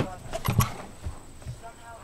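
Indistinct voices talking faintly, with two sharp knocks close together about half a second in.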